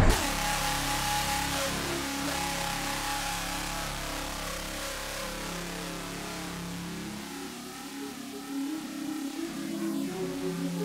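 A car engine revving with tyre smoke hiss, as a sound effect mixed over sustained music chords. It fades down a few seconds in, and the music rises again near the end.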